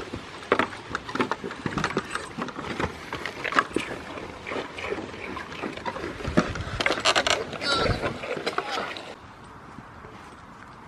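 Goat kids eating biscuits held out to them over a wooden fence: close, irregular crunching, knocking and rustling. A little after nine seconds in it gives way to a quieter, steady background.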